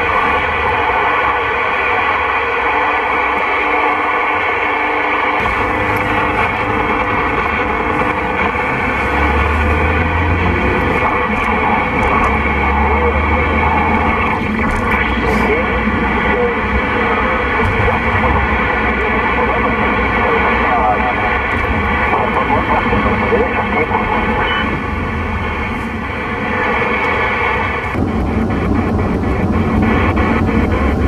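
President Lincoln II+ CB transceiver's speaker putting out received signals: narrow, crackly radio audio with steady whistling tones and indistinct voices, over a low car rumble. Near the end a quick run of ticks comes as the channel is stepped down and the received sound changes.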